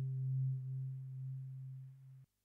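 A single low, steady synthesizer note held and fading away: the last note of the song.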